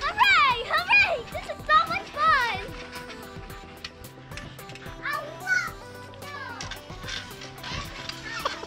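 Young girls' high-pitched squeals and shouts as they play, in two spells, the first few seconds and again about five seconds in, over background music with a steady beat.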